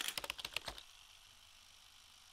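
Editing sound effect: a quick, irregular run of sharp clicks, like fast typing, during the first second, then near silence.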